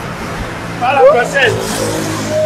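Car engine running steadily, a low hum, with a short burst of voice about a second in.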